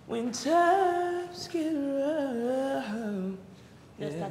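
A solo voice singing unaccompanied, in two phrases of long held notes with a slight waver, a short break between them about a second and a half in. It stops shortly before the end.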